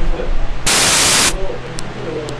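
A loud burst of hiss like static, lasting about two-thirds of a second near the middle, over a steady low hum with faint voice-like sounds around it. Such bursts recur about every two seconds.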